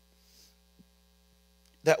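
Steady low electrical mains hum from the microphone and sound system in a pause in the talk, with a faint breath into the mic near the start. A man's voice comes back near the end.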